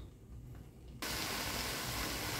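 Indian pennywort (vallarai keerai) leaves sizzling in a steel pan as their water cooks off: a steady hiss that starts suddenly about a second in, after a quiet moment.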